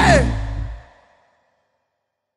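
The end of a stoner metal song: a last vocal cry falling in pitch over guitars, bass and drums, then the band rings out and dies away within about a second, leaving silence.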